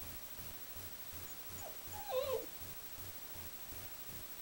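A young puppy gives one short, wavering whimper about halfway through.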